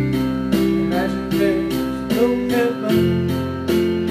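Electric bass guitar holding long low notes under a piano-led backing track that strikes steady repeated chords; the bass note changes about three seconds in.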